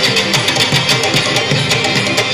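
Live Pashto folk music played by a seated band, with a plucked string instrument over a fast, even hand-drum beat, heard loud through the hall's sound system.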